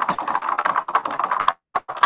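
Typing on a computer keyboard: a fast run of keystrokes, then a few separate key presses near the end.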